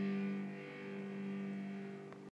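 Electric guitar's last chord left ringing after the song, its held notes slowly dying away.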